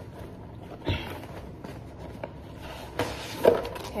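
A cardboard box being opened by hand: a knock about a second in, then cardboard rubbing and sliding as the lid comes off the foam insert near the end.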